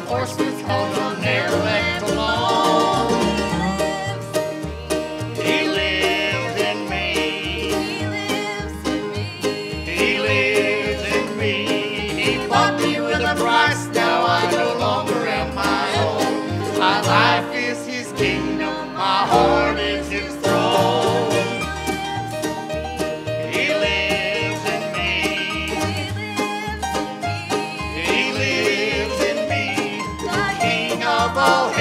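Vocal trio of two men and a woman singing a gospel song into microphones over an instrumental accompaniment with a steady bass beat.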